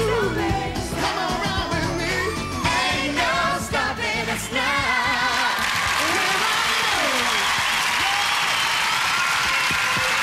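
Live pop song with several voices singing over a band, ending about halfway through; audience applause follows, with a solo voice singing a short sliding line over it.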